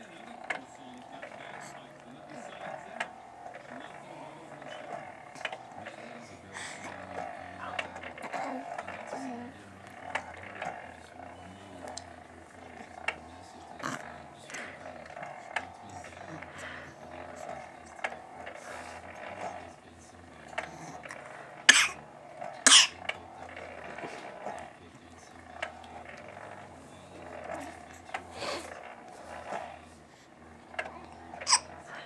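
A young infant of about two months cooing and babbling softly. Scattered small clicks run through it, and two sharp knocks about a second apart, a little past two-thirds of the way through, are the loudest sounds.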